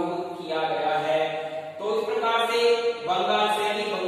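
Slow chant-like vocal music: long held notes, each lasting about a second, stepping from one pitch to the next.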